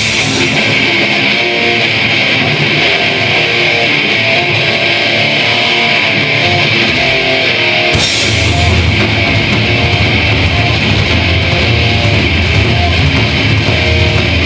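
Heavy metal band playing live, an instrumental passage of distorted electric guitar riffing over bass and drums, loud and without vocals. About halfway through, crashing cymbals and a heavier low end come in as the full band hits harder.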